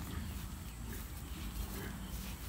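Carabaos (water buffalo) grazing, tearing and chewing grass in faint scattered crunches over a steady low rumble.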